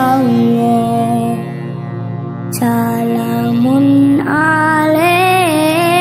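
A woman singing a sholawat, an Islamic devotional song, in long ornamented phrases over a sustained low accompaniment. The voice pauses briefly about two seconds in, then comes back and climbs higher in pitch.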